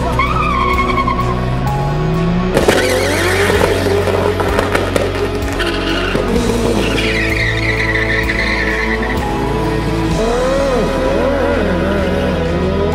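Two drag-racing cars launching hard from the start line about two and a half seconds in, engines revving up in rising sweeps, with a tyre squeal a few seconds later, over background music.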